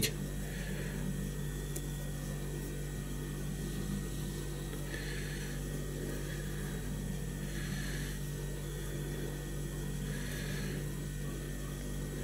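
Steady low electrical hum with about four faint, soft rustles spaced a few seconds apart, as the body of a small fly is wound turn by turn onto a hook in a tying vise.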